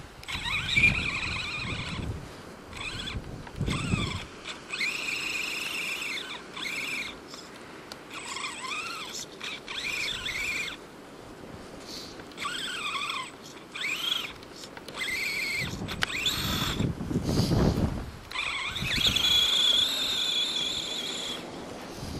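Electric motor and drivetrain of an Axial RC truck whining in short bursts, the pitch rising and falling as the throttle is worked while it churns through snow. A low rumble comes in twice, about four seconds in and again near the end.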